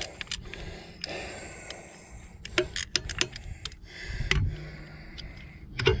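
Hand ratchet wrench clicking in short, uneven runs as loosened bolts on a tractor's PTO shaft housing are backed out, with metal tools clinking. There is a cluster of clicks a little before halfway and a dull knock about four seconds in.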